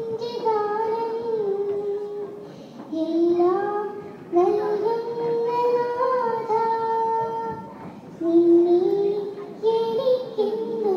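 A young girl singing a Malayalam devotional song solo into a microphone, in melodic phrases of long held notes with brief pauses for breath between them.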